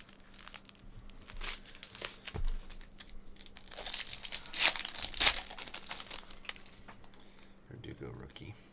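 Foil trading-card pack wrapper crinkling and being torn open by hand, with the loudest rips about four and a half to five and a half seconds in.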